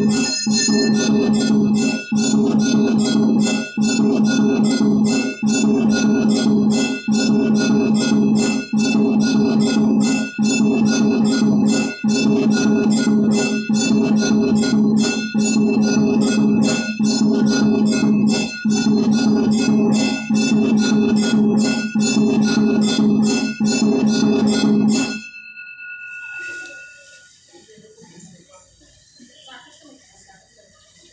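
Rapid temple bell ringing with drumming, in a mechanical-sounding loop that repeats about every second and a half, the kind an electric temple drum-and-bell machine plays during puja. It stops suddenly about 25 seconds in, leaving only faint room sounds.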